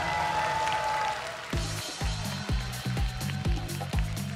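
Background music: a held note fading out, then a steady beat of low drum hits with a bass line from about a second and a half in.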